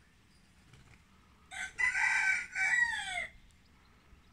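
A rooster crowing once, a crow of nearly two seconds in a few joined parts that falls in pitch at the end, starting about a second and a half in.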